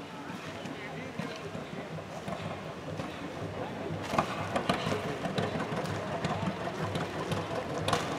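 John Deere compact tractor's diesel engine idling steadily, getting louder toward the end.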